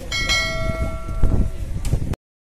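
A metal bell struck once, ringing out and fading away over about a second and a half, over a low background of crowd noise.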